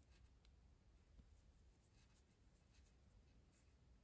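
Near silence, with faint soft rubbing and a few light ticks as yarn is worked on a metal crochet hook.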